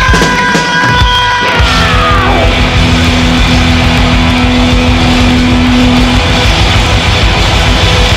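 Live thrash metal band playing loud, distorted electric guitar over drums and bass: a high held guitar note slides down about two seconds in, followed by a long held low note.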